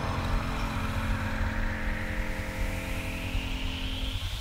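Yamaha XT660R single-cylinder motorcycle engine running at low speed as the bike rolls along slowly, with a hiss that climbs steadily in pitch.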